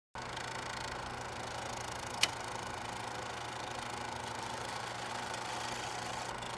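A faint, steady machine hum with a single sharp click a little over two seconds in.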